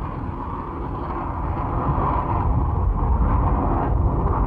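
Tomahawk cruise missile's solid-fuel rocket booster at launch from a warship: a steady, deep rushing noise that grows a little louder partway through.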